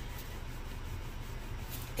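Wooden rolling pin rolling over floured pie crust dough on a wooden board: a soft, steady rubbing over a low, steady background hum.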